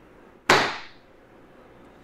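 A single sharp slap of both palms coming down flat on a desktop, about half a second in, dying away quickly.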